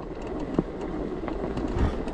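Emmo Oxe fat-tire e-bike riding over a snow-covered path: a steady low rumble and hiss of the wide tyres rolling on packed snow, with a light click about half a second in and a low bump near the end.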